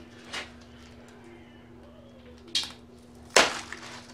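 Scotch tape and a thin sheet form being peeled off a cured aircrete block: a few short rustling scrapes, the loudest a sharp crackle about three and a half seconds in. A faint steady hum runs underneath.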